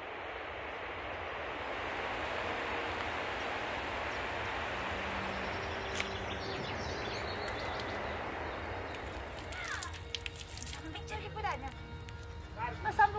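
Steady rushing of flowing water, fading in at the start, with a single sharp click about halfway. Near the end the rushing drops away and short chirps and voices come in.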